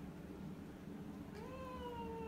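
A domestic cat's single long meow, starting past the middle, rising briefly and then held with a slow fall in pitch.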